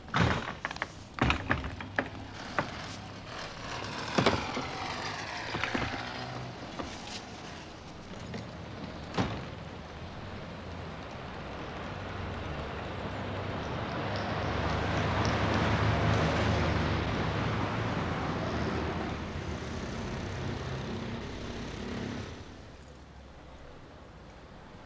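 A few sharp knocks and thuds in the first several seconds, then a motor vehicle passing along the street, its noise building to a peak and dying away, cut off suddenly near the end.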